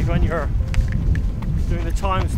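Wind buffeting a moving microphone outdoors, an uneven low rumble, with a man's voice breaking in briefly near the start and again near the end.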